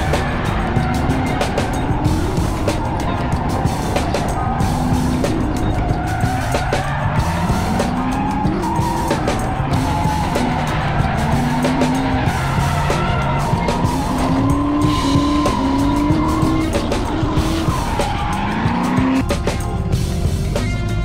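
Drift cars' engines revving up and down again and again, with tyres squealing and skidding through a tandem drift. Music plays underneath.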